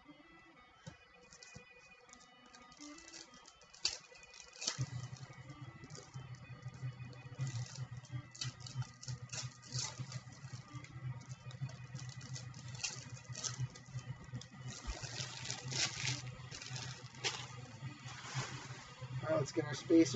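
Football card packs and cards handled by hand: scattered clicks, taps and wrapper crinkles as packs are opened and cards sorted. From about five seconds in, a steady low hum sits underneath.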